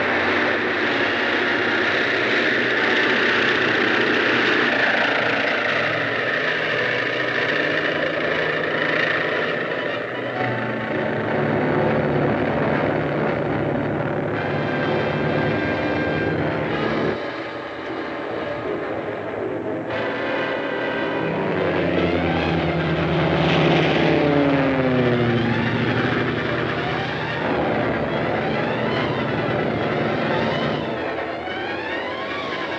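A steady propeller-aircraft engine drone mixed with background film music. About two-thirds of the way in, the music moves in repeated rising and falling figures.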